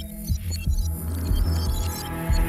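Opening theme music of a TV show: repeated deep bass thumps under steady held tones, with scattered bright high notes.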